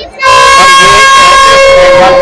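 A loud, steady horn blast at one pitch, starting suddenly about a quarter second in and held to the end.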